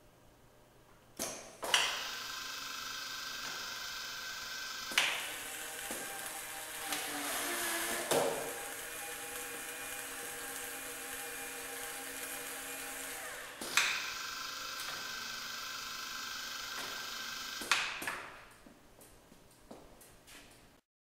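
Bench-scale automated bottle-filling and capping machine running: sharp clicks as its pneumatic stoppers and actuators switch, over a steady motor hum from the conveyor and cap-tightening head. The hum changes about five seconds in and again near fourteen seconds, then stops with a click near the end.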